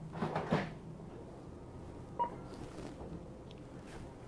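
Rustling and a few knocks of items being handled at a shop checkout counter, in a short flurry at the start, then a single brief electronic beep a couple of seconds later.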